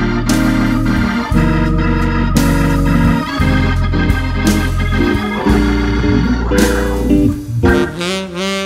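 Hammond organ playing a slow ballad, holding sustained chords over a deep bass line, with a few cymbal crashes.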